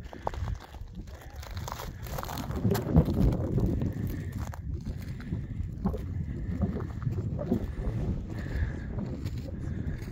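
Wind rumbling on the microphone, with crunching footsteps on loose, rough lava rock and faint voices of people nearby.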